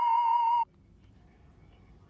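A loud electronic tone with a slight warble in pitch, over a steady higher tone, cuts off suddenly about two-thirds of a second in. Faint room tone follows.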